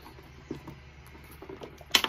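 Handbag contents being handled: faint knocks and rustling, then a sharp click near the end.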